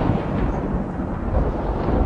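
Stage thunder sound effect: a continuous low rumble of rolling thunder.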